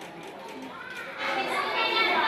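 Children's voices and chatter, growing louder about a second in.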